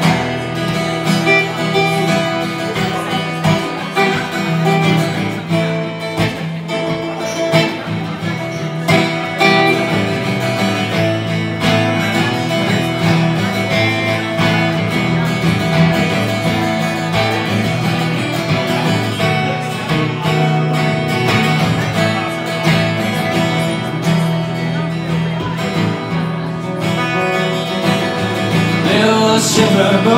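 Two acoustic guitars played together, steady strummed and picked chords in an instrumental song intro. A man's singing voice comes in near the end.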